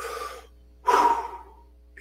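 A man takes an audible breath in, then lets out a louder breath about a second in.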